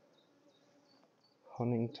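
Faint buzzing of honeybees from an open top-bar hive.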